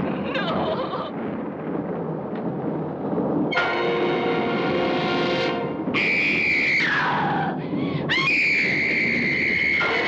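A woman screams in terror over a sustained orchestral chord from a horror film score. A long high scream drops away about seven seconds in, and a second scream rises and holds near the end. A low rumbling noise fills the first few seconds before the chord enters.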